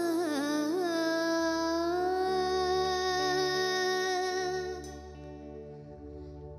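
A child singing solo into a microphone over light instrumental accompaniment: a few quick ornamented turns, then one long steady held note of several seconds. Near the end the voice stops and only the quieter accompaniment goes on.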